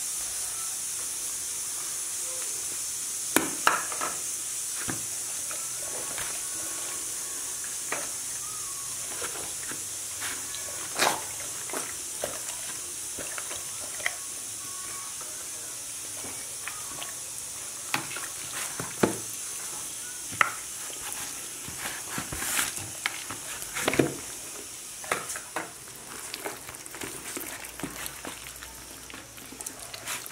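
Hands rubbing spice paste into a whole chicken in a plastic basin: scattered wet handling noises and light knocks against the bowl, over a steady high hiss that eases a little near the end.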